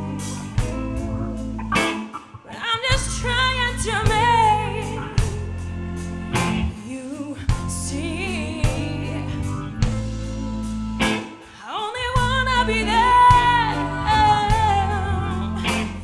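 Live band playing a song: a woman sings lead with wide vibrato over electric guitar, electric bass and drum kit. The bass and drums drop out briefly twice, at about two and a half seconds and eleven and a half seconds, before coming back in.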